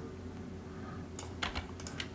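Computer keyboard keystrokes, a quick run of about six taps starting a little past halfway, over low room hiss.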